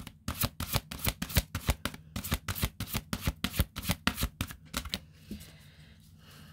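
A deck of tarot cards shuffled by hand: a quick run of crisp card slaps, about six a second, that stops about five seconds in.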